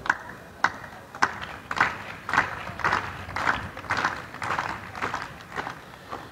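Crowd clapping in unison, a steady beat of about two claps a second with each clap slightly spread out.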